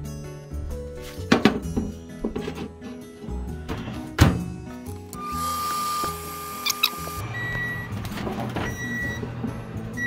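Microwave oven in use: its door shuts with a thunk, it runs with a steady hum, then gives three short high beeps as the cooking time runs out. Light background music plays under it.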